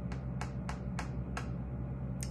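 A run of about six short, sharp clicks or taps, roughly three a second, stopping about a second and a half in, over a steady low hum.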